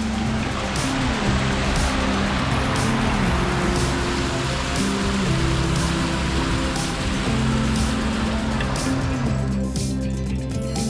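Background music over the steady rush of a plaza fountain's jets splashing into its basin; the splashing cuts off suddenly just before the end.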